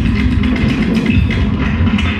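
Experimental turntable music played live: a dense, continuous low-pitched layer with short high tones scattered over it.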